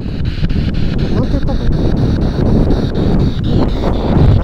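A spirit box radio scanner sweeping through stations. Loud static is chopped by the sweep's steady clicking about four times a second, with brief fragments of broadcast voices.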